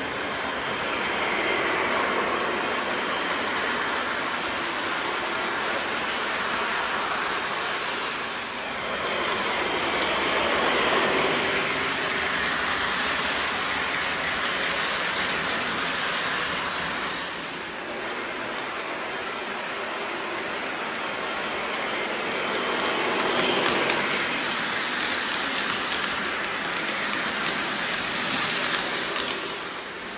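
O-gauge model trains running on three-rail track, the rumble of their wheels on the rails swelling louder as a train passes close and easing off as it moves away, three times over.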